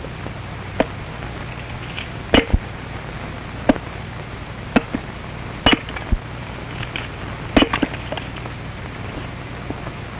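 Axe chops splitting firewood on a chopping block, about six sharp irregular strikes a second or two apart, over the steady hum and hiss of an old film soundtrack.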